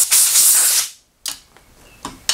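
Compressed-air blow gun hissing as it blows metal chips off the lathe chuck and workpiece. The air cuts off suddenly about a second in, and a light metallic click follows.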